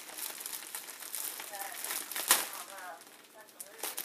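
Clear plastic bag crinkling as it is handled around a padded travel bag, with one sharp crackle about two seconds in.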